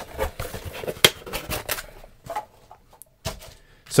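A small cardboard mailer box with packing peanuts inside being handled: rustling and scraping with a run of sharp taps and clicks, the sharpest about a second in, thinning out in the second half.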